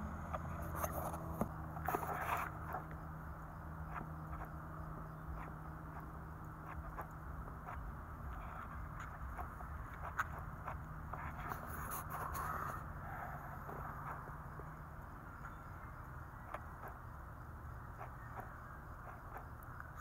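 Faint steady low hum with scattered small clicks and a few brief scrapes, like handling noise and movement.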